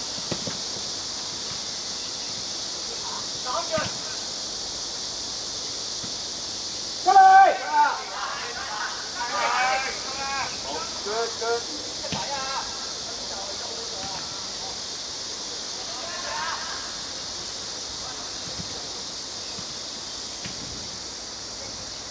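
Scattered shouts and calls from football players and coaches over a steady hiss; the loudest shout comes about seven seconds in.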